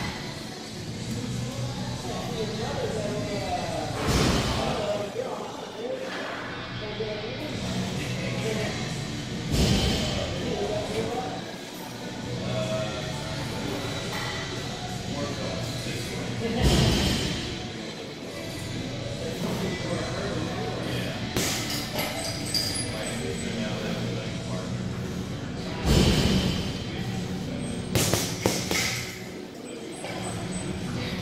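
Music with vocals plays throughout. A handful of heavy thuds stand out above it, gloved punches landing on a heavy bag, the loudest about four, ten, seventeen and twenty-six seconds in.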